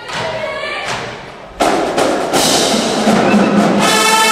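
Marching band playing, with drums and brass. Softer playing gives way to the full band coming in suddenly and loud about one and a half seconds in, and it holds on steadily.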